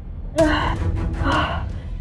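A woman gasping for breath twice in strained, rasping gasps, as if choking.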